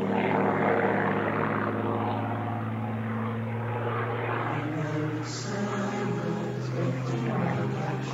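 Propeller aircraft engine droning steadily, with a brief hiss about five seconds in.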